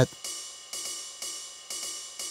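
Roland TR-8 drum machine's hi-hat, triggered live by MIDI notes from Ableton, struck about once a second. Each stroke is a short hiss that quickly dies away.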